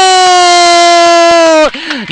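A man's long, loud, held shout of "Góóól!" hailing a goal, sung out on one note that slowly sinks in pitch before breaking off near the end.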